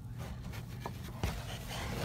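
Soft rustling and handling noise close to the microphone, with a couple of faint knocks a little after a second in.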